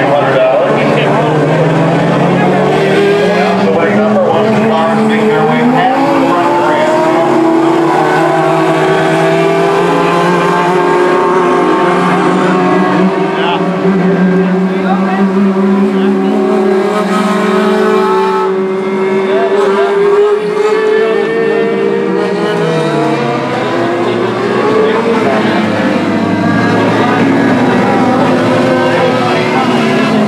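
Modlite dirt-track race cars running on the oval. The engines rise in pitch over the first few seconds, hold high and steady through the middle, then fall away over the last several seconds.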